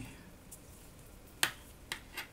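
Two short, sharp clicks about half a second apart in the second half, the first the louder, from a USB cable's plastic plug being handled in the fingers.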